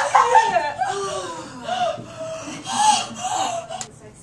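Several people whooping and laughing in celebration, the cheering gradually dying down with a last brief burst near the end.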